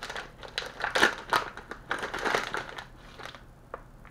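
Plastic bag of soft-plastic fishing worms crinkling in the hands as it is opened, in irregular bursts for about three seconds, loudest about a second in, then a single small click near the end.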